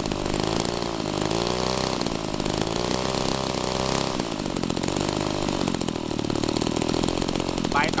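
Small air-cooled engine on a homemade machine running steadily, its pitch wavering up and down for a few seconds in the first half before settling.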